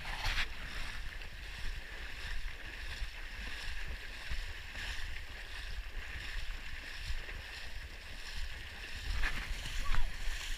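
Runners' feet splashing through shallow water flooding a forest trail, a continuous sloshing of repeated wading steps.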